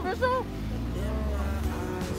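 Small mini truck's engine running as it drives past close by, a low hum that fades out near the end. A person's voice calls out briefly at the start.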